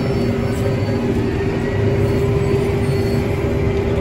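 CLAAS tractor's engine running steadily, heard from inside the cab: a low rumble with a steady hum over it.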